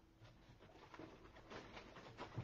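Near silence with faint light ticks: tiny metallic microbeads being sprinkled by hand.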